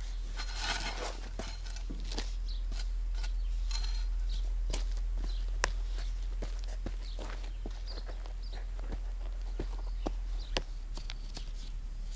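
A hand garden tool digging and scraping in soil as holes are worked for fence stakes, with scattered sharp knocks and clicks. Short high chirps, like birds, come through, and a steady low hum runs underneath.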